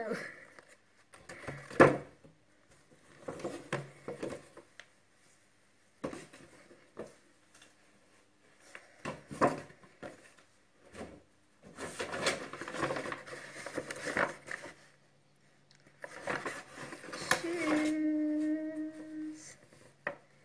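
Shopping and gift bags rustling and crinkling in repeated bursts as items are pulled out and handled. Near the end, a short steady hummed note.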